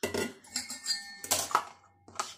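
Stainless steel kitchen vessels being handled on a counter: about five clinks and knocks, each with a brief metallic ring.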